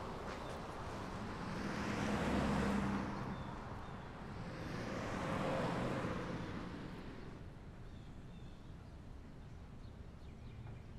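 Two vehicles passing one after the other, each a rise and fall of road noise, the first loudest about two and a half seconds in and the second a few seconds later.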